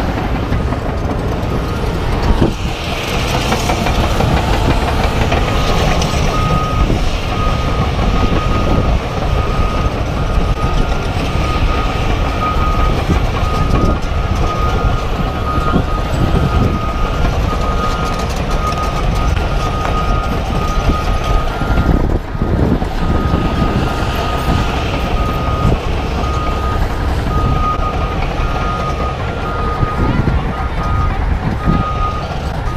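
Heavy tracked construction machinery running with a deep, steady rumble, while a backup alarm beeps in a regular on-off pattern through most of it.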